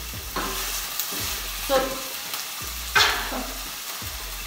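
Diced bacon frying in hot oil, a steady sizzle, while a wooden spatula stirs it, scraping and knocking against the pot a few times.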